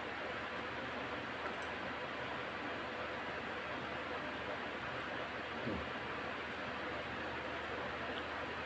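Steady, even hiss of background noise, with one faint soft knock about two-thirds of the way through.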